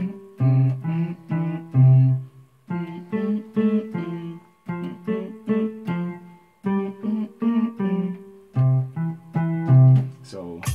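Yamaha PSR-630 electronic keyboard playing a highlife rhythm in F: short, syncopated chord stabs over low bass notes. The phrases come in repeating groups, broken by brief gaps about every two seconds.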